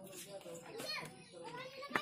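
Faint background voices, among them a small child's voice with short rising and falling pitch glides.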